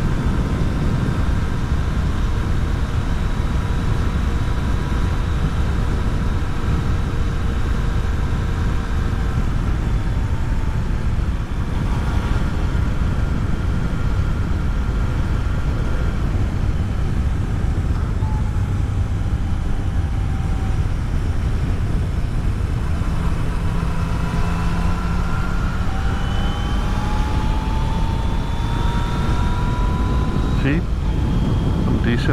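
Motorcycle riding at road speed: the Yamaha Tracer 900 GT's three-cylinder engine running under heavy wind rush on the microphone. The engine note holds steady, dips briefly about eleven seconds in, and climbs over the last several seconds as the bike speeds up.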